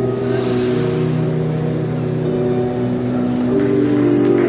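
Figure skating free-program music played over an ice rink's speakers: sustained, held chords, with a brief hiss about half a second in.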